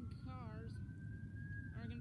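A faint emergency-vehicle siren wailing: one slow rise in pitch that peaks about halfway through and then begins to fall.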